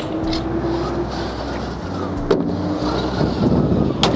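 Steady low rumble of a motor vehicle engine running, with a sharp knock right at the end.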